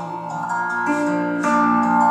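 Electric guitar playing held, picked notes between sung lines, a new note coming in about every half second.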